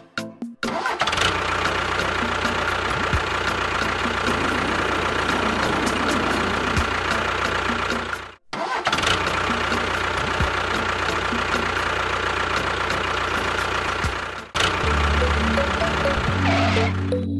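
A small electric motor in a miniature model running with a steady whine and hum. It cuts out suddenly about halfway through and starts again. Music takes over near the end.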